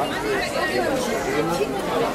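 Crowd chatter: several people talking at once around the camera, with no single voice standing out.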